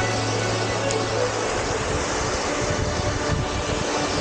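Background music with held notes, over a steady rushing noise from a small mountain stream cascading over rocks. The music's low bass note drops out about a second and a half in.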